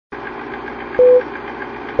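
Film-leader countdown sound effect: a steady projector-like whirr with fast ticking, and a short mid-pitched beep about a second in, with another beep starting right at the end.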